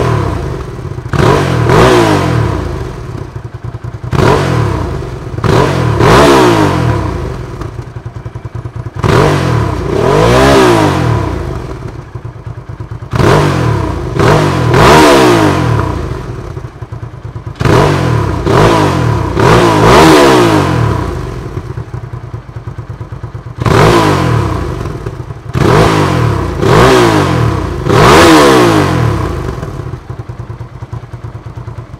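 Hyosung GV650's 647 cc V-twin engine, stationary, revved in quick throttle blips, mostly in clusters of two or three. Each rev rises and falls back to idle, with the engine idling between clusters.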